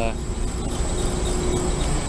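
4-ton Goodman split-system condensing unit running steadily, compressor and condenser fan on, while refrigerant is charged into it: a steady low hum with a thin high whine over it.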